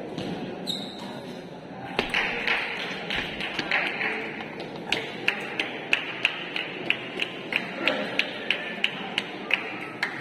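Table tennis rally: the ball clicking sharply off the bats and the table, a quick run of evenly spaced ticks about three a second, over the murmur of voices in the hall.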